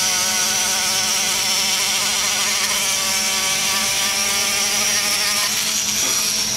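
Die grinder spinning a sanding roll inside the exhaust port of an aluminum LS cylinder head, polishing the port wall. A steady high whine whose pitch wavers as the roll bears on the metal.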